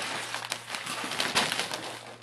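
Rustling and crinkling of Christmas stocking contents being dumped out and handled, a dense run of small crackles that peaks a little past the middle.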